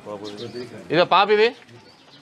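A man's voice speaking a short, loud phrase about a second in, with a quieter voice just before it.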